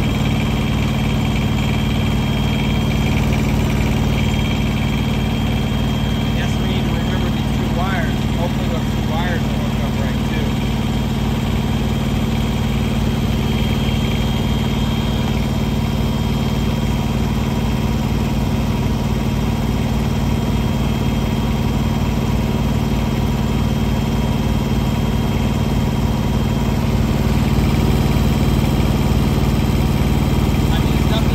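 Diesel engine idling steadily, a close, even drone that holds the same speed throughout.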